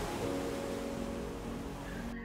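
Ocean waves breaking on a lava-rock shoreline, a steady rushing wash of surf. Faint, held music notes sit under it from about a quarter second in.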